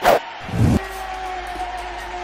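Short electronic logo sting: a sudden sharp hit, a lower thud about half a second later, then a steady held synth tone.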